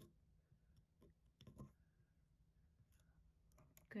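Faint, scattered clicks and taps of plastic pegs being pulled from and set into the holes of a wooden triangle peg board, the loudest about a second and a half in.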